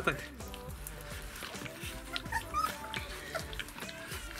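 22-day-old Rottweiler puppies eating puree from bowls, with small wet lapping ticks and a few brief whimpers in the middle, over steady background music.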